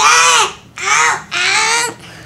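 A high-pitched voice sounds three loud notes, each about half a second long and arching in pitch.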